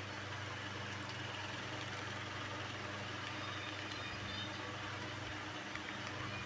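A steady low machine hum with a constant pitch, with a few faint ticks.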